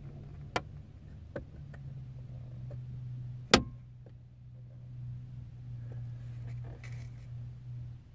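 Steady low hum inside a truck cab, with a few small clicks and one sharp, much louder click about three and a half seconds in.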